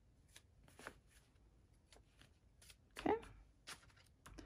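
Paper banknotes rustling and flicking in the hands as cash is handled, a scattering of soft crisp snaps. A brief louder sound comes about three seconds in.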